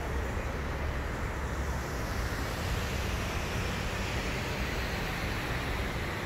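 Steady outdoor rumble of background noise, strongest in the low end, with no distinct events.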